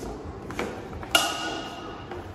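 Steel swords clashing in a sword-and-buckler bout: a light click about half a second in, then one sharp metallic clang just past a second in that rings on briefly.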